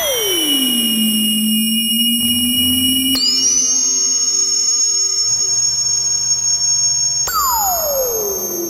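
Eurorack modular synthesizer playing FM tones: an E-RM Polygogo oscillator frequency-modulated by a WMD SSF Spectrum VCO, run through two Mutable Instruments Ripples filters. Sustained notes change sharply about three seconds in and again near the end, each change bringing a gliding pitch, falling at the start and near the end and rising at the first change.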